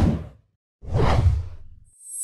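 Whoosh sound effects of an animated logo sting. One swoosh fades out in the first half-second, and a second swoosh rises and fades about a second in.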